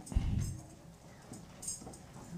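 A single low thump just after the start, then faint small clicks and rustling.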